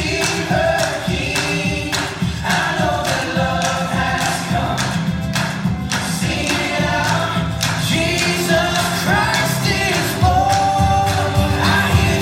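A song with several voices singing together over a steady beat.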